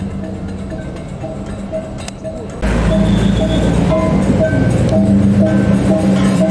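Balinese baleganjur processional gamelan playing: hand cymbals, gongs and drums with short gong notes repeating in a steady beat. The music gets suddenly louder and closer about two and a half seconds in, with a low rumble under it.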